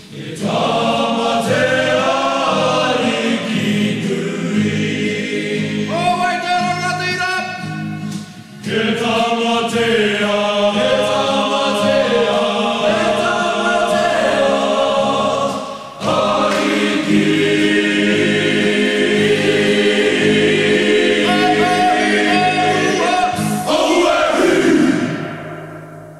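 Choir singing a Māori-language song over a steady, pulsing low accompaniment, in phrases with two short breaks; the song fades out near the end.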